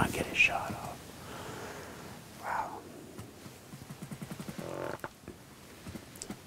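A man whispering: a few hushed words in short bursts with pauses between.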